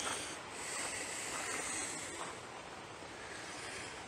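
Steady rushing of river water in the background, an even hiss with no distinct events.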